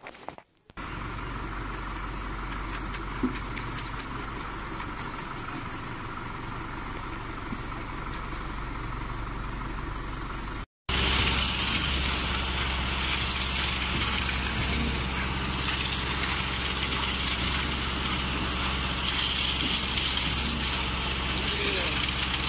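Engine of a concrete pump running steadily as concrete is delivered to a footing pit. After a sharp break about eleven seconds in, it runs louder, with more hiss on top.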